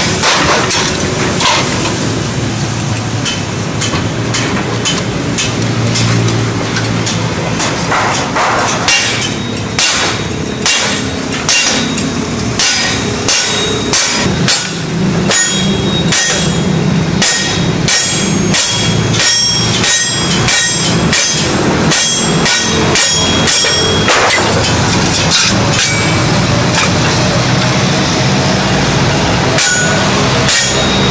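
Hammer blows on thin sheet metal laid in a steel channel, as the strip is beaten into shape. The strikes are repeated and irregular, denser in the second half, over a steady low hum.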